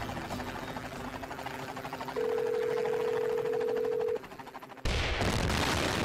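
Helicopter blades chopping in fast pulses. About two seconds in, a steady phone-like tone joins for two seconds. About five seconds in, loud explosions cut in.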